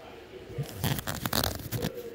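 A rustling, crackling burst of close handling noise, about a second and a half long, starting about half a second in, made up of many quick clicks and scrapes.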